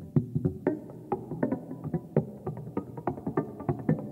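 Live jazz music: a quick run of short, sharply struck pitched notes, several a second, over a sustained lower layer.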